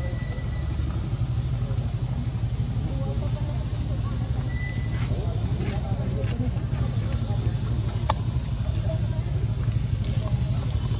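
Outdoor ambience: a steady low rumble, like distant traffic or wind on the microphone, under faint distant voices. A single sharp click comes about eight seconds in.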